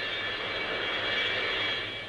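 Rolls-Royce Avon turbojets of an English Electric Lightning fighter in flight: a steady rush of jet noise with a high whine on top.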